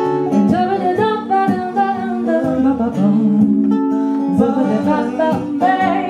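Live acoustic music: a plucked string instrument, like a guitar, played in a steady rhythm with a voice singing over it.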